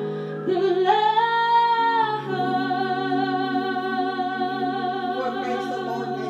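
A woman singing into a microphone over instrumental backing. She slides up into a held note about a second in, then sustains a long note with vibrato.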